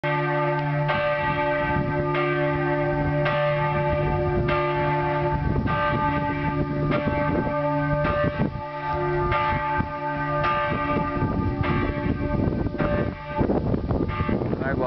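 Church bells swinging in a peal, a stroke about once a second, each ringing on into the next.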